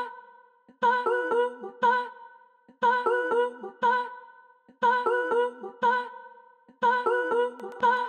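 Short bell-like synth phrase of a few plucked notes, repeating about every two seconds with gaps between, played dry with the mid/side filter-delay effect rack bypassed. Right at the end the rack switches on and a dense shimmer of delayed echoes fills in above the notes.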